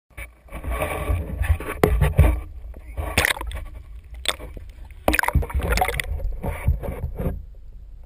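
Water splashing and sloshing close against a GoPro camera's waterproof housing as it is pushed through weeds into shallow water, with sharp knocks of handling on the housing over a low rumble. About seven seconds in the splashing stops and the sound drops to a dull, muffled hush as the camera goes under.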